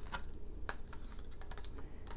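A few light clicks and taps as a tarot card is laid down on the table and handled with long fingernails, the sharpest click about two-thirds of a second in.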